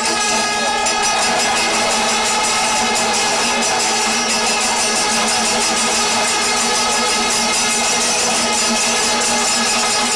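Kerala temple melam ensemble playing steadily: fast, even strokes of chenda drums and small cymbals under held, droning tones of wind instruments.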